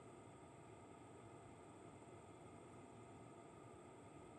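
Near silence: a faint, steady hiss with no distinct events.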